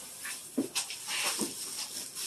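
Black plastic trash bag rustling and crinkling in short bursts as it is handled and pulled open.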